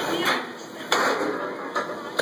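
A sharp clank about a second in, with a lighter knock near the end: the plate-loaded leg press sled and its weight plates knocking as the set is finished and the sled is handled.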